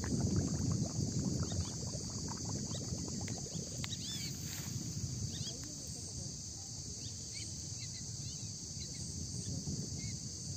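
Pond-side ambience: a steady high drone of insects, under a low rumble from wind or handling on the microphone that is heaviest in the first few seconds and eases about halfway. A few short chirps, likely birds, come in the middle.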